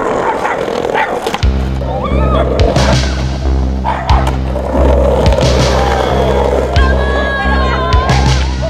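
Skateboard wheels rolling on concrete, with several sharp board clacks and impacts. Synth music plays over it, its steady bass coming in about one and a half seconds in.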